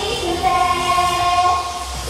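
Idol pop song performed live: female voices hold a long sung note over the backing track. The sound dips briefly near the end, then the music picks up again.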